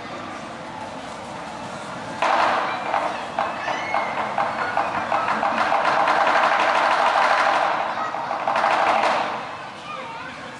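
Audience applauding and cheering, bursting in suddenly about two seconds in, dipping briefly near eight seconds, then swelling again before fading out near the end.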